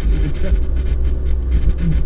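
A steady low rumble with faint speech from a radio news broadcast over it.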